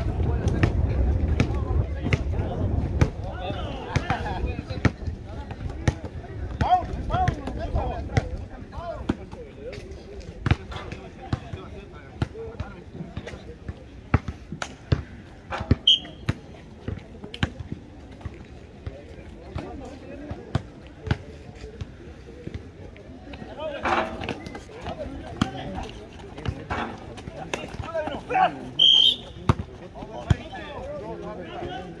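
A basketball bouncing again and again on an outdoor asphalt court during a game, with players' voices now and then. Wind rumbles on the microphone for the first several seconds.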